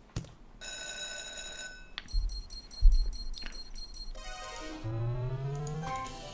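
Online video slot game sound effects: an electronic chime, then a fast ringing, bell-like tally as a win is counted into the balance, then tones rising in pitch near the end. A low thump, the loudest sound, comes about three seconds in.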